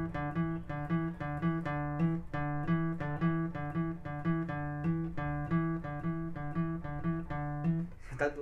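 Nylon-string classical guitar playing a repeating single-note riff, low notes alternating with higher ones in a steady, even rhythm.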